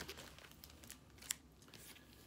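Faint crinkling and clicking of a vinyl LP in a plastic outer sleeve being handled, with one sharper click a little past the middle.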